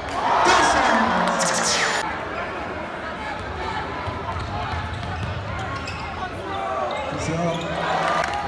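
Basketball game heard from the stands of a large arena: a ball being dribbled on the hardwood under the chatter of the crowd, with a louder swell of crowd noise in the first two seconds.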